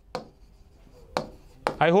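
Pen tapping against the glass of an interactive touchscreen display while marking it up: three sharp taps, the last two about half a second apart. A man's voice begins near the end.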